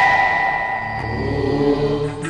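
Musical transition sting: a single bell-like tone rings out and slowly fades over a low drone, and a held vocal note comes in about a second in.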